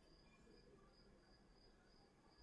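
Near silence, with a faint high-pitched cricket chirp pulsing evenly about three times a second.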